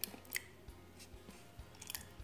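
Thick table cream squeezed from a carton into a pan of condensed milk, heard as a few faint short clicks and a soft squelch as it drops in.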